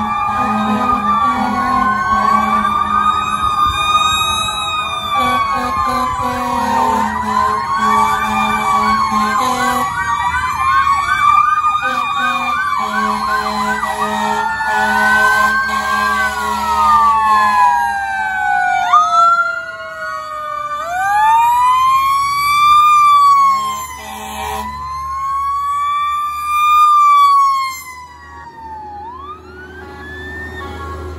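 Several emergency-vehicle sirens sounding at once from passing fire engines and police vehicles: overlapping wails and a fast yelp, broken up by repeated air-horn blasts. In the second half a mechanical Q siren winds down and winds back up twice. The sirens fade near the end under a fire engine's low engine rumble.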